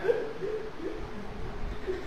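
Soft, low laughter: a few short wavering notes, much quieter than the speech around it.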